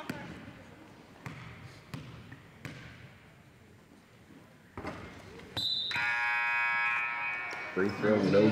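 A basketball bouncing a few times on a hardwood gym floor at the free-throw line, then a couple more thumps around the shot. A little past halfway a gym horn sounds one steady blast of about two seconds, the loudest sound here, typical of the scorer's-table horn signalling a substitution.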